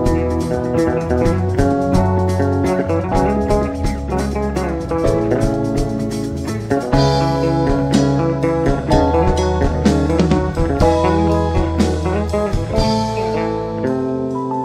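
Live band playing an instrumental jazz arrangement on electric guitar, keyboards, electric bass and drum kit. The cymbals come in brighter about halfway through, and the bass drops out near the end.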